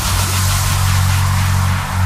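Electronic music breakdown from a DJ set: a sustained deep bass drone under a wash of hissing white noise, with no beat.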